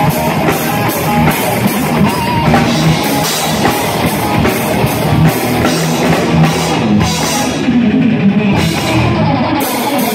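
Heavy metal band playing live: distorted electric guitars over a steadily pounding drum kit, loud throughout.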